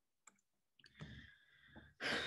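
Near silence with a few faint short clicks, a computer mouse clicked to advance the presentation slide.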